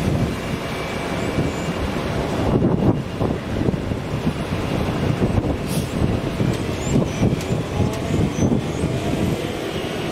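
GE ES44C4 diesel-electric locomotive, with its V12 four-stroke engine, running as the freight train rolls slowly toward the listener, giving a steady low rumble.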